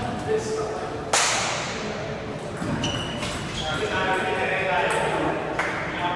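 A table tennis point: sharp hits of the ball on bats and table, with one loud, sharp crack about a second in that echoes through a large hall.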